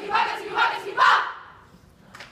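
Youth choir chanting shouted syllables in unison, about two a second, the last and loudest about a second in, then dying away into a short pause.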